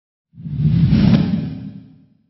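Whoosh sound effect for an intro logo reveal: one deep, rushing swell that starts about a third of a second in, peaks around the middle and fades away by the end.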